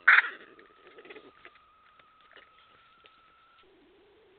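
A badger's sharp yelp right at the start, loud at once and fading within half a second, followed by a lower, quieter call about a second in. A faint steady high electronic whine runs beneath and stops near the end.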